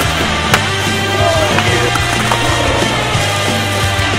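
Skateboard on pavement: a sharp board clack about half a second in and a few fainter knocks, mixed under continuous loud backing music.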